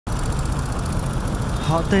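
Steady low rumble of street traffic and motor vehicle engines.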